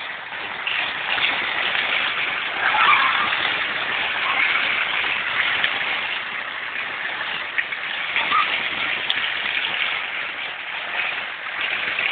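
Steady hiss of heavy rain and floodwater running through a flooded street.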